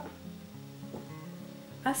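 Faint background music with low notes stepping slowly in pitch, under a light steady hiss.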